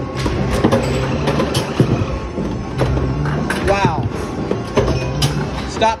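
Busy arcade din: background music with a steady bass beat, voices, and sharp clacks of hard balls knocking in skee-ball-style rolling lanes.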